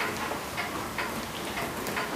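Rustling and light ticking of a CPAP nasal mask's fabric headgear straps and tubing being pulled over the head and fitted onto the face.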